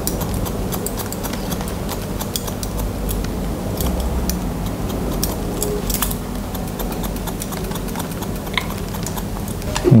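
Barber's scissors snipping into a wet fringe: a long run of short, irregular snips over a steady low hum.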